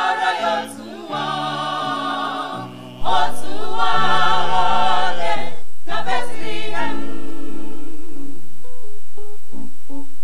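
A mixed choir of men and women singing a carol without accompaniment, in phrases broken by short breaks. The singing ends about seven seconds in, and single plucked notes, an acoustic guitar beginning to play, follow to the end.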